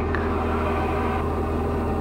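Steady drone of a Diamond DA40 light aircraft's piston engine and propeller in flight, heard inside the cockpit: an even low hum with a row of steady tones above it.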